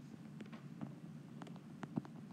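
A few faint, light clicks of a stylus tip on an iPad's glass screen during handwriting, over a steady low room hum.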